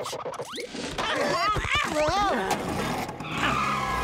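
Cartoon cries with a wavering, warbling pitch, then a cartoon boatmobile pulling away in a noisy whoosh near the end.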